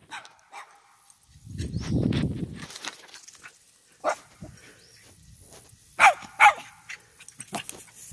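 Yorkshire terrier giving two short, high barks about half a second apart, some six seconds in. A low rumble on the microphone comes before them, around two seconds in.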